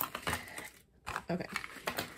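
Paper scraps and sticker backings rustling as they are pulled out of a cardboard box, then a few light clicks and taps of small items landing on a wooden table.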